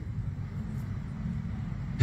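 Steady low background rumble with a faint hiss, no distinct events.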